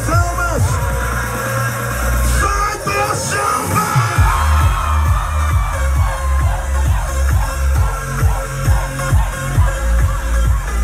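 Loud electronic dance music over a sound system, with a steady thumping kick drum and bass. The beat drops out for a moment a couple of seconds in, then comes back in.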